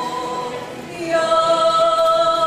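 A group of folk singers singing a Slovak folk song together in long held notes, a new phrase starting about a second in.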